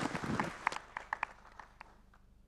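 Audience applauding, thinning out to a few scattered claps and dying away shortly before the end.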